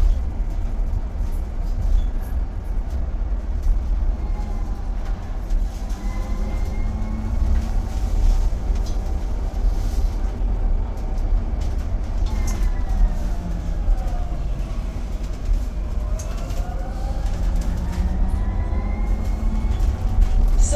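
Cabin noise of an Enviro200 EV electric bus on the move: a steady low road rumble under the electric drive's whine. The whine rises in pitch about six seconds in, falls as the bus slows a little past halfway, and climbs again as it pulls away near the end.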